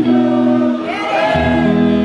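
Live band playing a slow interlude: held keyboard chords under a sustained sung vocal line, with a deep bass chord coming in a little past the middle.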